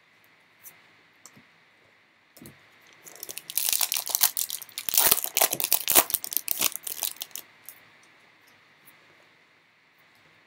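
A foil trading-card pack being torn open and crinkled in the hands, a dense run of crackling and tearing from about three seconds in until about seven and a half seconds, after a few faint ticks.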